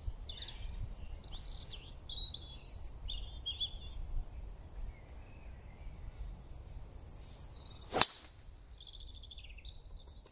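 A golf driver striking a teed ball once with a sharp crack about eight seconds in, the loudest sound. Birds chirp throughout, over a low rumble of wind on the microphone.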